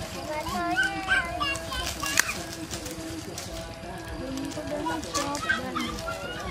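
Children's voices calling out briefly, twice, over background music with a steady low tone. A single sharp click comes about two seconds in.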